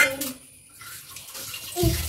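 Water running from a tap, a steady hiss that builds from about a second in, with a sharp click at the very start and a dull thump near the end.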